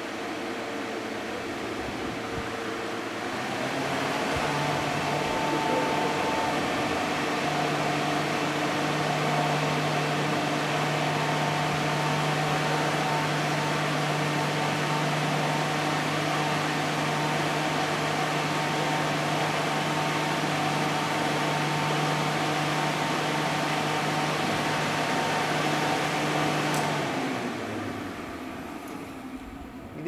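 Electric air blower running steadily, driving a jet of air up through a long tube: a rushing of air over a steady motor hum. It gets a little louder about four seconds in, and near the end it is switched off and winds down.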